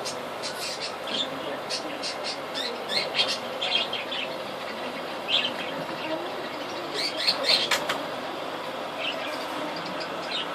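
Steady hiss of aquarium aeration, fine air bubbles streaming up through the tank, with scattered short high chirps and clicks over it, a cluster of them about seven seconds in.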